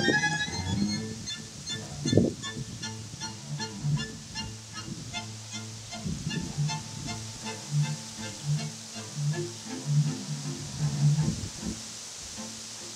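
Chamber string ensemble of violins and cello playing classical music, a passage of short, evenly repeated notes.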